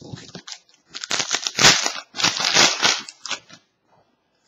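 Foil wrapper of a trading-card pack being torn open and crinkled by hand. It is loudest in two long stretches between about one and three seconds in, then a few short rustles.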